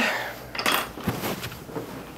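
A few light clicks and knocks, about half a second to a second in, as a handheld chiropractic adjusting instrument is set back in its holder on a stand.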